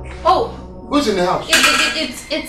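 A person's voice in several short, loud exclamations, one after another.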